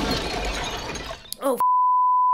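A loud crash of something smashing and shattering in a film soundtrack, lasting about a second and a half. A woman's startled 'Oh' follows, then a steady censor bleep begins near the end and covers a swear word.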